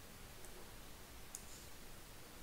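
Two faint computer mouse clicks, about a second apart, over a low steady hiss.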